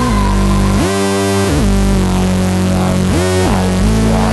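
Electronic dance music with a heavy synthesizer bass whose notes slide up and down in pitch.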